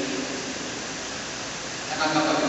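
Steady, even background hiss of a large room during a pause in speech.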